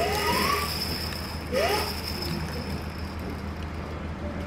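Two short rising whistles, the first at the start and the second about a second and a half in, each with a brief rush, as flow is pushed through the PVC pipe into the turbine-type water flow-rate sensor. A steady low hum runs underneath.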